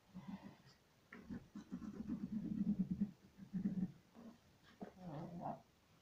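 Low vocal sounds from an animal, most likely a pet, coming in several irregular bursts, the longest and loudest in the middle.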